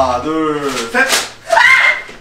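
Raised voices exclaiming, one drawn out with falling pitch, with a single sharp slap about a second in.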